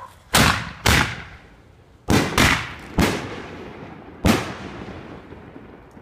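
Excalibur artillery-shell fireworks going off: six sharp bangs in about four seconds, each trailing off in an echo.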